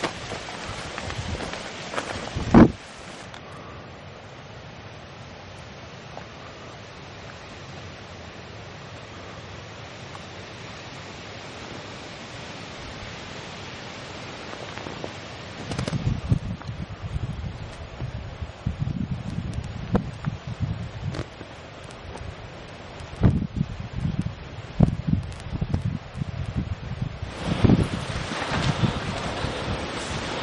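Wind buffeting the microphone in irregular gusts, with one sharp loud bang about two and a half seconds in. From about three to sixteen seconds in only a steady faint hiss remains.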